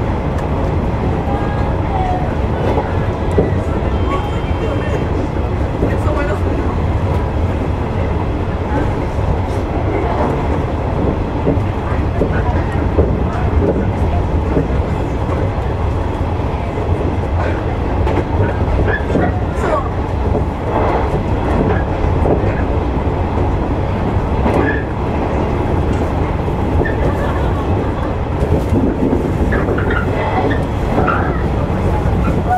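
Shinano Railway electric train running along the line, heard from inside the cab: a steady rumble of wheels on rail with scattered short clicks from the track.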